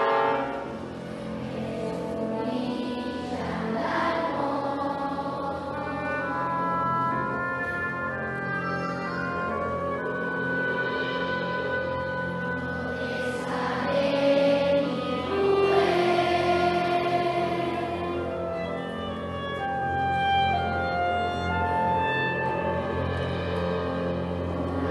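Live ensemble music in a concert hall: long, slowly changing notes over a steady low drone, swelling louder around the middle.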